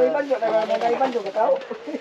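People talking, most likely in a local language that the transcript did not capture; no other distinct sound stands out.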